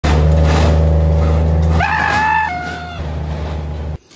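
Steady, loud low drone of a side-by-side utility vehicle's engine. About two seconds in, a high-pitched yell lasts about a second and drops to a lower pitch halfway through.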